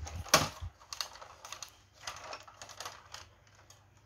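Clicks and knocks of a large plastic Majorette Peugeot Hoggar toy car being handled, its body and rubber-tyred wheels moved by hand. One sharp knock comes just after the start, then scattered lighter clicks that fade.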